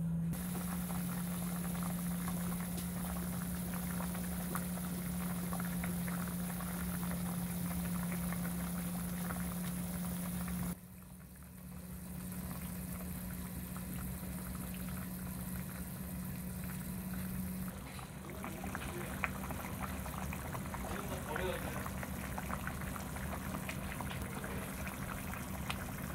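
Doenjang jjigae (soybean paste stew) bubbling at a rolling boil in a pot, over a steady low hum. The sound dips briefly about eleven seconds in.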